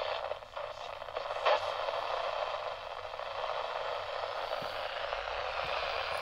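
AM radio of a National Radicame C-R3 radio-camera hissing with steady static through its small speaker as the tuning wheel is turned off a station, with a few faint crackles in the first couple of seconds.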